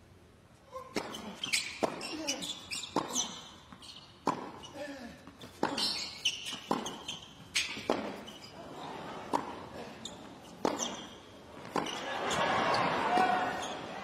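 Tennis rally on a hard court: sharp racket-on-ball strikes and ball bounces, about one a second, starting about a second in. Crowd noise swells near the end.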